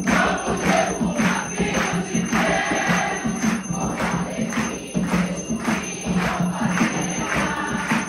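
A congregation singing an Umbanda ponto together, keeping time with steady rhythmic hand clapping.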